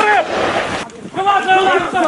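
Several voices shouting at once, loud and raised in pitch, with a brief break about a second in.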